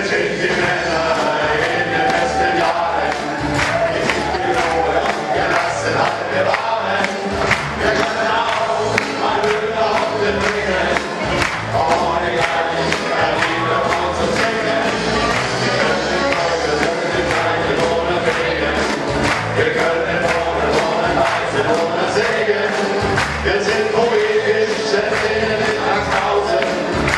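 Group of men singing together with band accompaniment and a steady beat.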